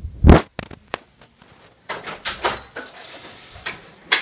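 A series of sharp knocks and clatters: a loud one just after the start, two lighter ones, a cluster in the middle with a brief high tone, and another knock near the end.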